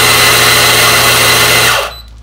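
Fiorenzato F83E flat-burr espresso grinder grinding coffee beans for a timed dose of about three seconds: a loud, steady motor whine over the crunch of the burrs, cutting off just before the end.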